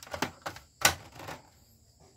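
Sharp clicks and taps of hard plastic and a circuit board being handled and pressed into the opened projector housing. There are about six irregular clicks, and the loudest is a little before the middle.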